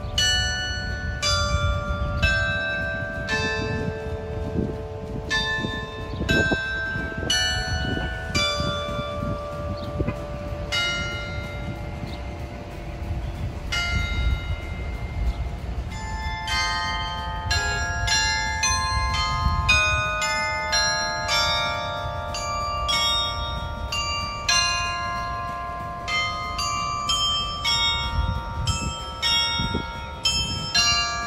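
The glockenspiel tower's 35-bell chime playing a tune, each struck bell ringing on after it sounds. The notes come slowly at first and quicken into a faster melody about halfway through, with a low rumble underneath.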